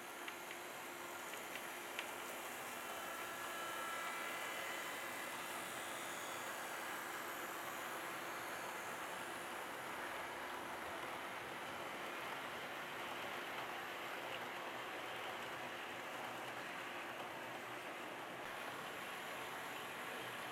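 HO scale model train running on sectional track: a steady, soft rolling of metal wheels over the rails, with a faint whine from the locomotive's can motor in the first few seconds.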